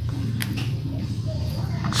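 Hands tearing a clump of mini elephant grass apart into small pieces: faint rustling of leaves and roots with two sharp snaps, one early and one near the end, over a steady low hum.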